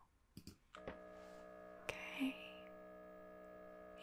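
MRI scanner running a T2-weighted fast spin echo sequence, heard as a steady buzzing hum of several held tones that starts just under a second in.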